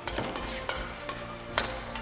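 Badminton rackets striking a shuttlecock in a fast doubles rally: a few sharp cracks, the loudest about one and a half seconds in, over a faint steady hum.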